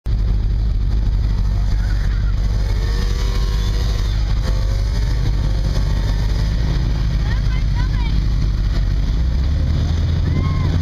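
ATV (quad) engines running with a steady low rumble, one rising in pitch near the end as it revs. Faint voices can be heard in the background.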